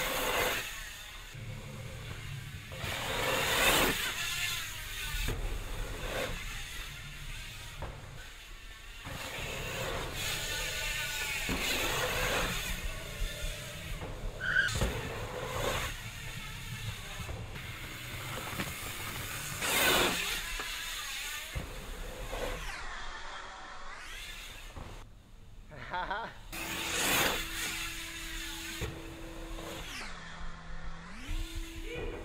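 BMX bike tyres rolling and grinding over packed dirt jumps and berms in repeated rushes of noise every few seconds, with sharp thuds as the bike lands.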